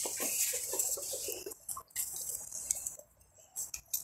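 Rustling and a few light knocks as a backpack is swung onto the shoulders and its straps settled.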